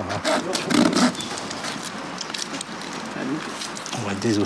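A few short clicks and scrapes of gloved hands and instruments working on a body on a dissection table, most of them in the first second and a half, over steady room noise, with a brief muffled voice about a second in.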